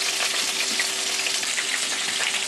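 Duck breasts frying in their own fat in a pan, an even sizzle, with a faint steady hum underneath.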